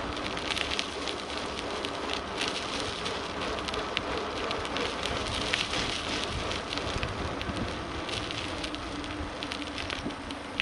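Steady rolling noise with frequent crackling ticks throughout: tyres running over a rough asphalt path, with rattle from the moving camera.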